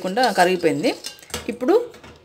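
A woman's voice talking. Around the middle come a few clinks of a steel spoon against a steel bowl as milk is stirred.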